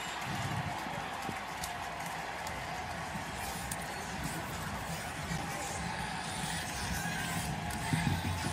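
Stadium crowd noise: a steady wash of many voices cheering and murmuring after a sack.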